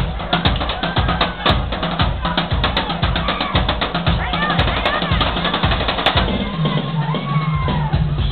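Live piano-bar band music with a drum kit: a steady kick-drum beat of about two strokes a second with snare and cymbal hits, and voices singing over it. About six and a half seconds in the drums drop out, leaving a held low note.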